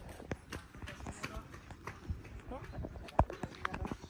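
Footsteps on brick paving and the irregular knocking and rattling of a shoulder-pole bakso cart, with its glass bottles and metal pot, as it is carried and set down. The sharpest knock comes about three seconds in, and faint voices sound underneath.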